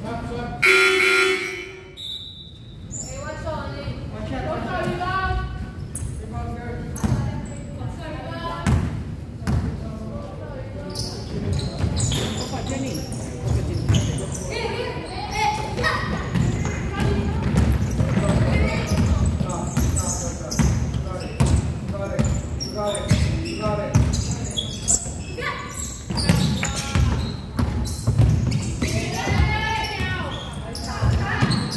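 Basketball bouncing on a hardwood gym floor during play, in repeated short thuds, with players' and spectators' voices echoing in the hall. A loud call cuts through about a second in.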